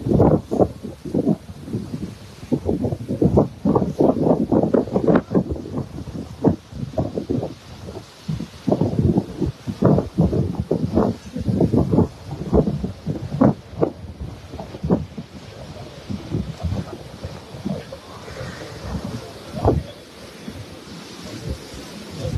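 Wind buffeting the phone's microphone in loud, irregular gusts.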